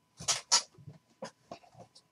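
A pair of dice thrown onto a table: two sharp clacks as they land, then lighter ticks as they tumble and settle.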